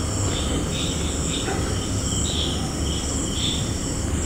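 Whiteboard marker squeaking in short strokes as lines are drawn on the board, over a steady high-pitched background whine and a low hum.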